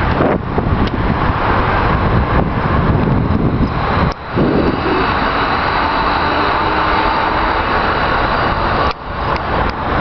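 Heavy wind rush on the microphone of a moving bicycle, mixed with steady highway traffic noise from cars and trucks. The sound drops out briefly twice, about four seconds in and near the end.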